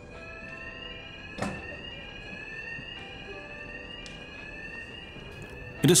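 AED wall cabinet's door-open alarm sounding: a repeating electronic tone that rises in pitch over and over, signalling that the cabinet door has been opened. A single sharp click comes about one and a half seconds in.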